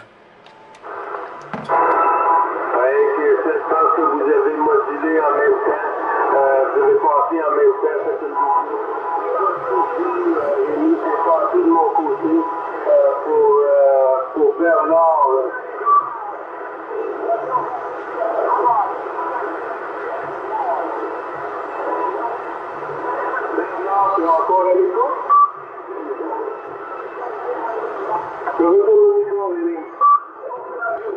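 Another station's voice received over single-sideband on a Yaesu FT-450 transceiver at 27 MHz, coming through the radio's speaker narrow and thin, starting about a second in. Steady interfering tones run beneath the voice.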